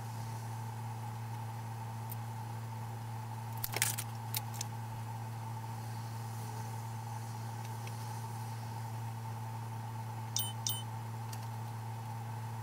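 A steady low background hum, with a few small clicks and taps of makeup items being handled: a cluster about four seconds in and a quick pair near the end.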